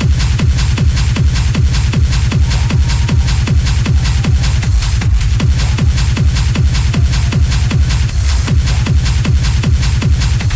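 Hard techno in the schranz style played as a DJ mix: a fast, steady kick-drum beat over heavy bass, running without a break.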